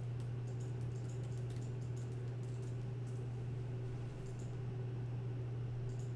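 Typing on a computer keyboard: a quick run of faint key clicks in the first couple of seconds, then a few scattered clicks, over a steady low hum.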